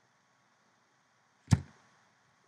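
A single short thump about one and a half seconds in, heard over a faint steady hiss.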